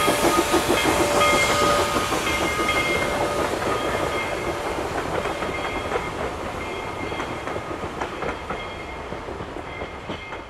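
Two-foot narrow-gauge boxcars and a wooden passenger coach rolling past, their wheels clicking in a quick clatter over the rail joints, with thin high steady tones over it that die away after about seven seconds. The sound fades steadily as the end of the train moves off.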